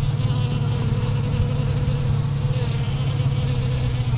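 Honeybees buzzing in flight around the hive entrance, a steady, unbroken low hum.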